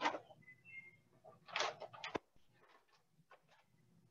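Faint handling noises of objects being moved about: a short rustling knock about one and a half seconds in, then a sharp click just after it, and a few softer ticks.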